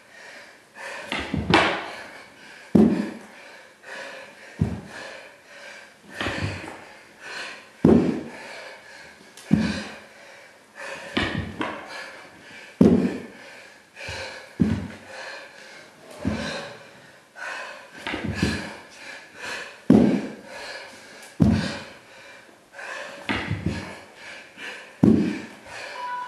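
A person doing burpees on a hardwood floor: a thud about every second and a half to two seconds as the body drops and lands, with heavy breathing between.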